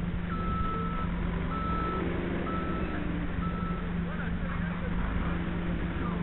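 Heavy earthmoving machine backing up: its reversing alarm beeps four times, about one beep a second, then stops, over the steady drone of its diesel engine.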